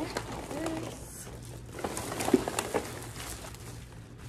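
Thin black plastic trash bag rustling and crinkling as it is handled and items are pulled out of it, with a couple of brief low hum-like sounds, the louder about two seconds in.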